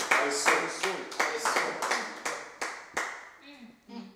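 Hands clapping in a steady beat, about three claps a second, stopping about three seconds in, with faint voices underneath.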